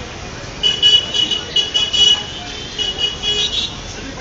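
A vehicle horn sounding a rapid series of short, high-pitched toots over steady street traffic noise. It starts about half a second in and stops just before the end.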